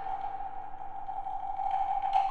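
Contemporary chamber music: a single high note held steady, with almost nothing else sounding; faint higher sounds come in near the end.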